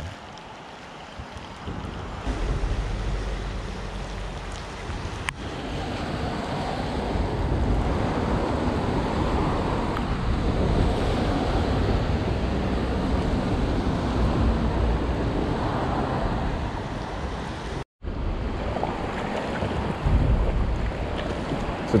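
Wind buffeting the microphone over the rush of creek water and rain on its surface: a steady noisy rumble that swells a couple of seconds in, with a brief dropout near the end.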